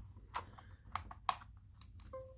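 A few light, sharp clicks and taps as an SD card is pushed into a laptop's card slot and seated.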